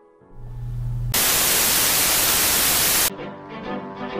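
A loud blast of static white noise, a sound effect of the kind that a 'headphone user alert' warns of. A low hum builds up first, then the noise runs for about two seconds and cuts off suddenly.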